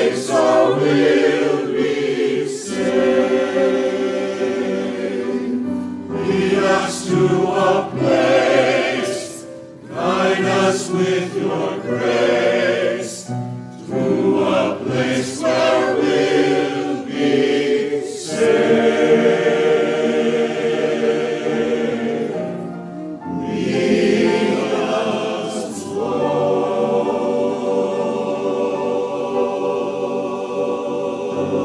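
A mixed church choir of men's and women's voices singing an anthem in phrases, with brief breaths between them. Near the end they hold a long sustained chord.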